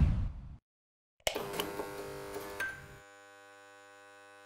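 Synthesized logo sting: a deep hit fading out in the first half second, a brief gap, then a sudden sustained synth chord with a few glittering ticks that fades away after about a second and a half. A faint steady electric-sounding hum is left underneath near the end.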